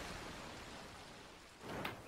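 A steady, rain-like hiss that slowly fades, then a short sharp clap-like burst near the end.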